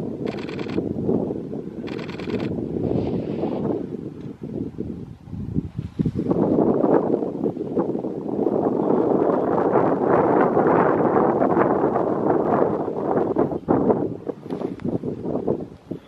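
Gusty wind buffeting the camera microphone, a rushing noise that grows stronger about six seconds in and stays strong, dipping briefly near the end.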